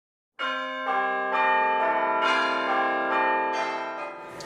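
Bell-like chimes: a run of ringing notes, a new one struck about every half second and each left to ring over the others, stepping lower in pitch, starting about a third of a second in.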